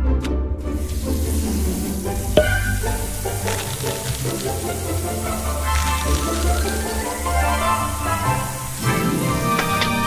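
Cartoon background music over a bathroom tap running, a steady hiss of water that starts about half a second in as the face is washed. There is a brief click about two seconds in.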